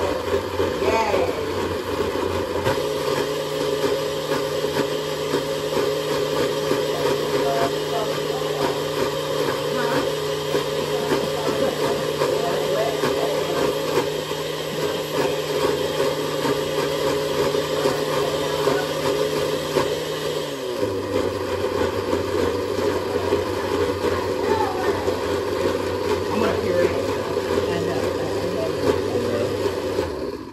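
Countertop blender running under load, puréeing thick sweet potato loosened with oat milk. Its motor pitch steps up about three seconds in, drops back near twenty-one seconds, and the motor cuts off at the end.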